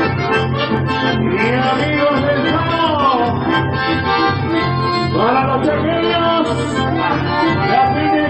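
Live chamamé played on accordion and bandoneon over electric bass, the reeds holding dense chords above a steady bass line. Twice a man's voice slides through long swooping calls over the instruments.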